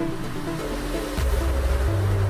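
Electronic background music: a hissing sweep builds up, then a deep bass line comes in just after a second.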